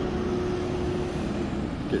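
Steady low rumble of road traffic and vehicles, with a faint steady hum that fades out about a second in.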